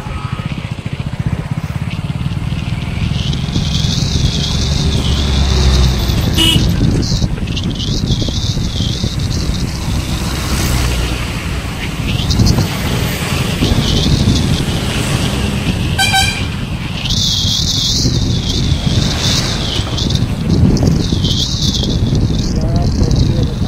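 Road travel noise: a vehicle running along a road, with wind rumbling on the microphone. A horn toots briefly twice, about six seconds in and again near sixteen seconds.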